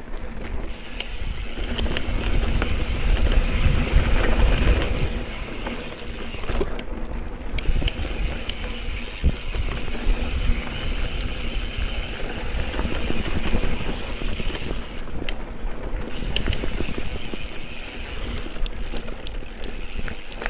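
Specialized Camber 650b mountain bike ridden fast over dirt singletrack: wind buffets the microphone with a heavy rumble that is strongest a few seconds in, over the scrub of Fast Trak tyres on dirt and a constant light rattle of the bike over bumps.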